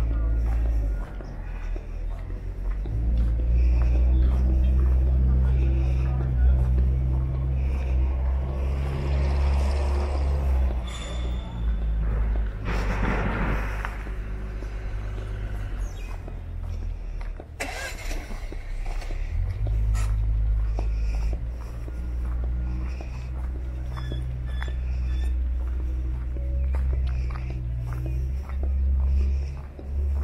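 A heavy, uneven low rumble that shifts every second or two, with faint voices in the background and a brief louder rush about thirteen seconds in.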